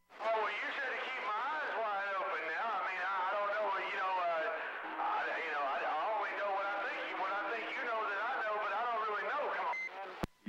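A voice coming in over a CB radio receiver, thin and narrow-sounding with hiss underneath, a reply from another station; it starts and stops abruptly at the ends, and a faint steady tone sits under it through the middle.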